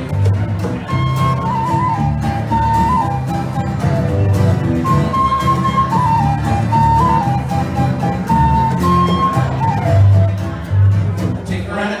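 Live Irish pub band playing an instrumental break between sung verses: a high, stepping lead melody over strummed acoustic guitar and a bass line. Singing comes back in at the very end.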